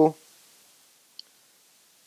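A single short, light click about a second in from the Canon EOS camera's controls as the aperture is being set to f4. Otherwise a quiet room.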